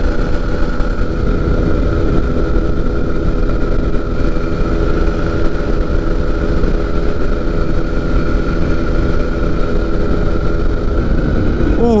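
Pegasus Quik flexwing microlight in level cruise: its engine drones steadily at constant power, heard from the open trike seat together with the rush of wind over the cockpit.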